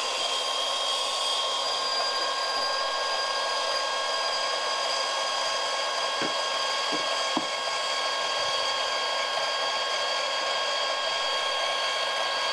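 Milwaukee cordless portable band saw running steadily, its blade cutting through a zinc-plated threaded steel rod. The sound is an even whine with several steady high tones over a dense hiss.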